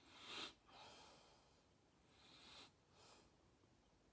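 A person sniffing a banana peel through the nose, about four faint, short sniffs.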